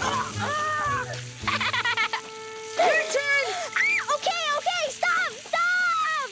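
Water spraying and splashing from a garden hose poked full of holes, then children laughing hard from about three seconds in, over background music.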